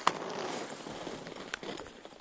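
Footsteps crunching on snow, with a sharp click at the very start.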